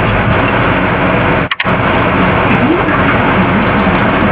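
Loud, steady, dense noise with faint wavering tones buried in it, cutting out twice in quick succession about a second and a half in.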